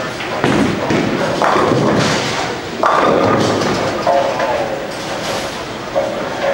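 Bowling-alley noise: balls thudding and pins clattering on the lanes, with a sudden loud crash about three seconds in, over background chatter.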